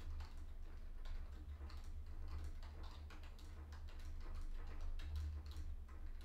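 Faint, scattered light clicks and taps of trading cards being handled and laid down on a playmat, over a low steady hum.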